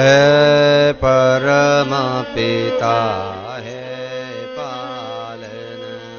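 Devotional chanting: a male voice sings long held notes with slow melodic bends over sustained instrumental accompaniment, loudest in the first three seconds and softer after.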